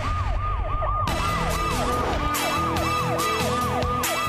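A siren-like sound effect in a news programme's opening theme: a fast up-and-down wail, about three to four sweeps a second, with a music beat coming in under it about a second in.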